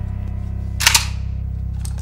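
A sharp metallic clack of an assault rifle being handled, about a second in, over a steady low drone of tense background music.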